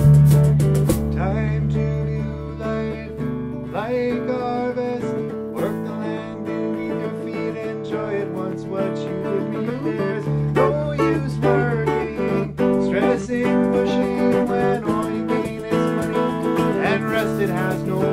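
A string band playing an instrumental passage: fiddle and electric guitars over a bass line, with bent notes here and there. The low end drops out for a few seconds in the middle and then comes back in.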